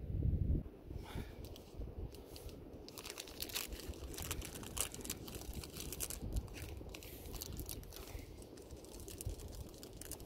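Plastic snack wrapper crinkling and tearing as it is handled and opened by hand, a dense run of irregular crackles. A low rumble comes in the first half-second.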